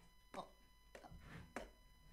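Near silence: quiet studio room tone with a few faint, brief sounds.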